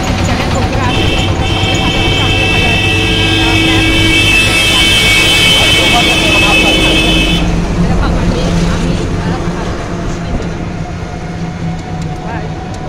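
Road and motor rumble from a moving open-sided rickshaw, with a horn held steadily for about six seconds, starting about a second in and cutting off past the middle.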